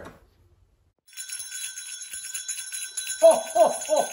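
Small bells jingling steadily from about a second in, with high ringing tones and a fast shimmer. Near the end a man joins in with a quick run of short laughing syllables.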